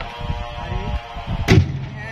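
A single heavy wooden thud about one and a half seconds in: a sengon log dropped onto the stacked logs in a wooden-sided truck bed. A steady background drone runs underneath.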